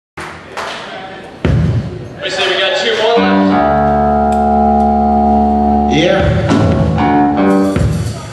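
Punk rock band playing live through amplifiers, with electric guitar and drums. About halfway through, a chord is held and rings steadily for a couple of seconds before the playing breaks up again.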